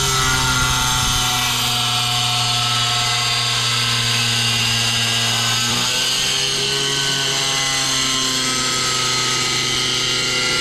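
Handheld angle grinder cutting through a tile, running steadily under load with a steady motor whine. The pitch sags slightly about six seconds in.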